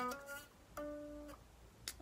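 Stratocaster-style electric guitar with a capo, played quietly: a note fades out at the start, then a single plucked note about a second in rings for about half a second and stops short, with a faint click near the end. The notes belong to a minor pentatonic lead lick.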